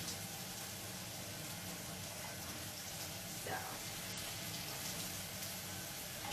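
Kitchen faucet running in a steady hiss.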